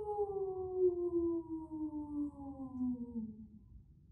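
A woman's voice imitating a wolf howl: one long howl that slides steadily down in pitch and fades out near the end.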